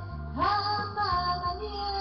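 A woman singing into a handheld microphone over a recorded backing track, ending the phrase on a long note that slides up about half a second in and is then held.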